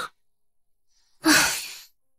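A person sighs once, a breathy exhale that starts about a second in and fades out over about half a second.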